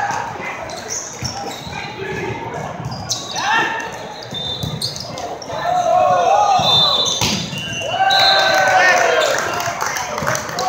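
A volleyball rally in a large echoing hall: the ball is struck with sharp slaps while players shout calls to each other, with the loudest shouts in the second half as the point ends.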